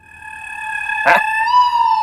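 A comic sound effect on the soundtrack: one long, held, pitched call, like a howl. It rises slightly about one and a half seconds in and then slowly falls in pitch.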